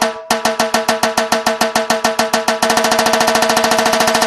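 A drum beaten with sticks in a quick, even beat of about five strokes a second, breaking into a fast roll a little over halfway through.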